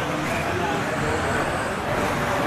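Electric 2WD stock-class RC buggies racing on an indoor dirt track: a steady mix of motor whine, shifting in pitch with throttle, and tyre noise on the dirt.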